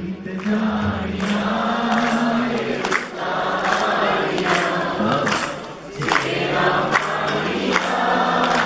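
Live Punjabi song performance: a male singer's long held notes with the crowd joining in, over sustained accompaniment and sharp percussive strikes about once a second. A heavy drum beat drops out right at the start.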